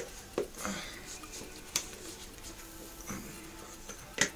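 A few light plastic clicks and knocks with faint rubbing, from a welding helmet being pulled on and adjusted over ear defenders.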